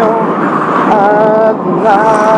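Men singing in a moving metro carriage, their voices over the steady rumble of the running train.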